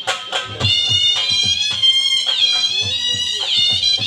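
Shehnai playing a long high reedy melody line that bends down in pitch twice in the second half, over regular dhol drum strokes.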